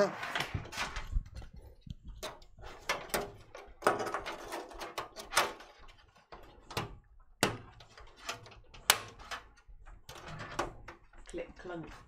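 Scattered knocks, clicks and taps of a PC tower case being handled: stood upright, with a cable moved inside it.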